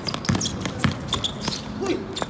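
Basketball dribbled on a hard court floor: two loud bounces about half a second apart, with scattered smaller clicks and knocks of play around them.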